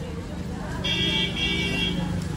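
A horn sounds, a steady pitched tone about a second long with a short break in the middle, over the murmur of a crowd.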